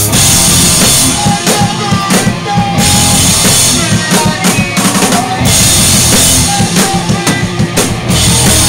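Live pop-punk band playing loud: drums to the fore with electric guitar and bass, in a choppy stretch of hard-hit drum strikes and short gaps rather than steady chords.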